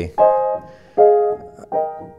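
Upright piano with new felt hammers, not yet voiced down: three chords struck a little under a second apart, each ringing and fading, with a bright tone.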